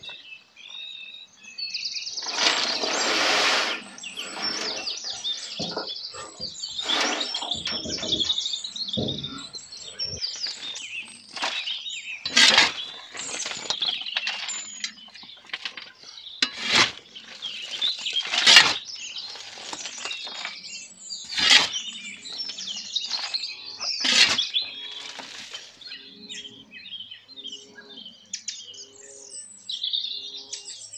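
Wild birds chirping and singing throughout, over repeated short scraping crunches of a shovel and rake working loose woodchip mulch; the crunches are the loudest sounds.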